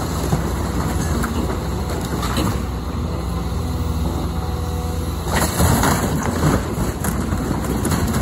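Caterpillar excavator's diesel engine running steadily under load while its bucket rips into a wooden house front, with wood cracking and splintering. A louder run of crashing comes about five seconds in as boards break and fall.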